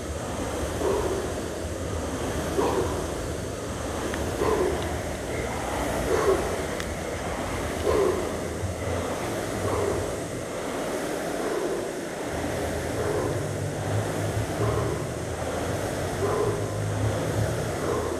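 Air-resistance rowing machine's fan flywheel whirring, surging once per stroke at about one stroke every two seconds, with the rower's hard breath on each drive.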